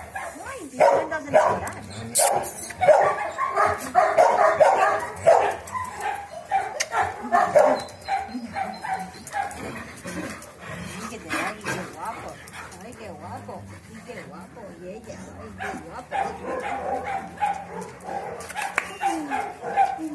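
Dogs whining and yipping excitedly while being greeted and petted, with some short barks. The sound is busiest over the first several seconds, eases off in the middle and picks up again near the end.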